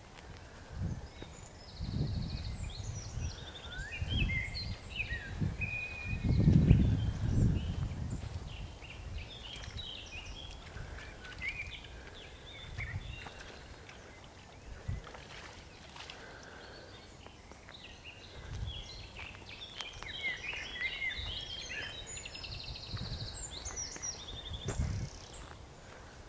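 Small birds singing in bursts of quick chirping notes, loudest about two to five seconds in and again near the end. Under them are low rumbles and thuds from the handheld microphone as it is carried along the bank, heaviest about six to eight seconds in.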